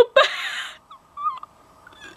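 A girl's breathy, wheezy sob-laugh as she fakes crying, a loud outburst of breath about a second long, then a faint high whimper.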